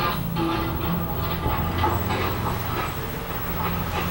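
Background music with train running sounds from a children's steam-engine story soundtrack.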